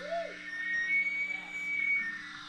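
Electric guitar through an amp, with notes bent up and down in pitch twice at the start. A thin steady high whine follows, over a low amp hum.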